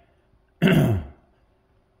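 A man clearing his throat once, a short harsh burst about half a second in that drops in pitch.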